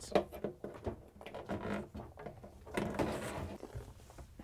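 Dishwasher power cord, braided water line and drain hose being pulled through holes in a wooden cabinet wall: irregular rubbing and scraping with light knocks.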